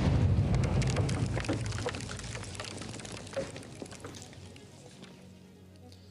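Rumble and falling rock debris after an explosives blast in a mine opening, with scattered ticks and patters that fade away over about five seconds.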